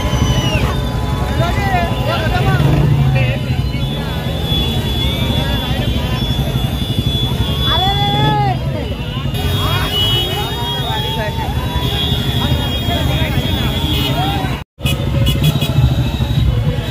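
Many motorcycle engines running at low speed in a slow procession, a steady rumble with people shouting over it. The sound cuts out completely for a moment about a second before the end.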